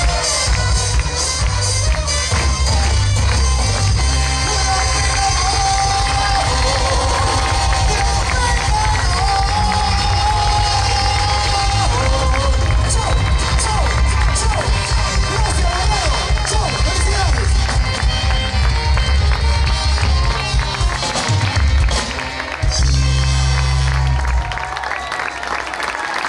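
Loud live band music with a heavy bass beat and a wavering sung or played melody, with a crowd cheering along. The music falls away near the end.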